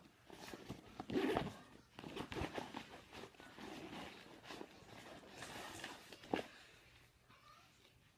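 Backpack pocket being unzipped and rummaged through: zipper, rustling fabric and handling noises, loudest about a second in, with one sharp knock about six seconds in as an item is pulled out.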